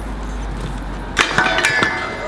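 A BMX bike rolls with a low rumble. About a second in, its pegs hit a low steel flat rail with a sharp clank, then grind along it with a ringing metallic scrape for most of a second.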